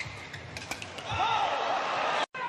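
Badminton rally on an indoor court: a few sharp racket-on-shuttlecock hits and shoe squeaks in the first second. From about a second in, louder arena crowd noise with shouting voices as the point ends.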